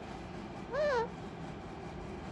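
Alexandrine parakeet giving one short call about three-quarters of a second in, its pitch rising then falling.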